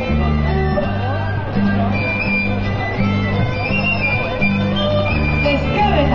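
Live folk band playing Basque dance music for the muxikoak, with a bass line stepping between notes under the melody.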